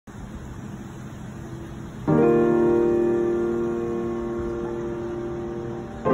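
Piano music: after about two seconds of faint background noise, a chord is struck and rings on, slowly fading.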